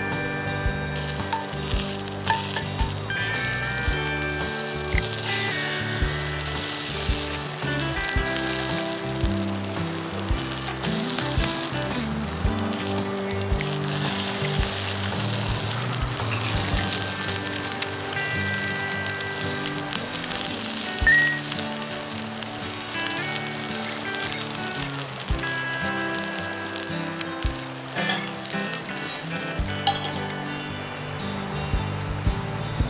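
Eggs and sausages sizzling as they fry in a skillet, the sizzle strongest through the middle of the stretch, under background music.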